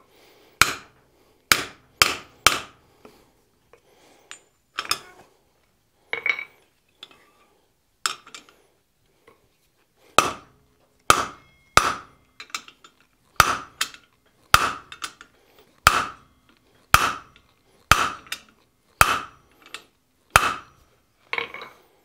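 Hand hammer striking a cold steel rivet on an anvil, peening its end down into a countersunk head. There are about twenty sharp metallic blows: a quick few near the start, scattered ones after that, then a steady run of about one a second from halfway through.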